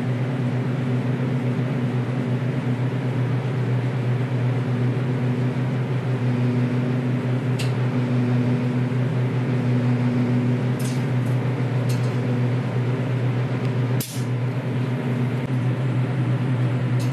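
Enclosed wheel-painting machine running with a steady low hum, with a few short sharp clicks in the second half as the wheel holder turns the wheel flat for spraying.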